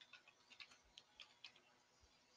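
Faint computer keyboard keystrokes, about four a second, as a password is typed.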